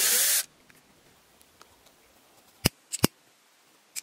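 Cordless drill running in one short burst as it bores through a small wooden heart button, stopping about half a second in. Later come a few sharp clicks from a hand lighter being struck.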